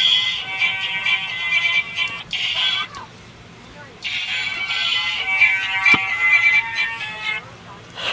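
Musical greeting card's sound chip playing a tinny recorded song through its small speaker, working again after a broken contact was soldered. The song cuts off about three seconds in as the card is closed, starts again a second later when it is reopened, and stops once more near the end, with a sharp click about six seconds in.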